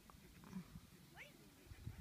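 Near silence: faint outdoor ambience with a low rumble, and one faint short rising call a little past a second in.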